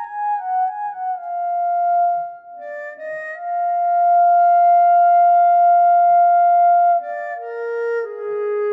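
Sampled clarinet sustains played from a Kontakt sample instrument with its scripted fake legato on: a slow line of connected single notes, mostly falling, with one long held note from about three and a half to seven seconds.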